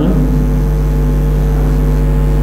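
A steady low hum that does not change, loud under everything else.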